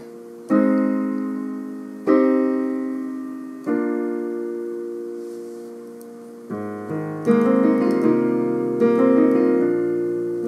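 Yamaha digital piano playing the A-flat major, C minor and B-flat major chords: three chords struck about a second and a half apart, each left to ring and fade. About six and a half seconds in, the progression is played with both hands, a bass note under the chords and more notes moving above.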